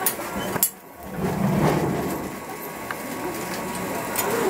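Metal clinks and clanks from the hinged mold plates of a rotating matsugae-mochi baking machine being handled, with a sharp clank about half a second in and a lighter one near three seconds.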